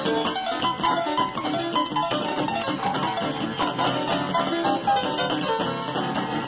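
Acoustic guitar and piano jazz duo playing live, a busy stream of plucked guitar notes over piano.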